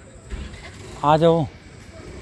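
A single call of "aaja" (Hindi for "come here"), held briefly with a wavering pitch that drops at the end, about a second in. It follows a short low thump just before.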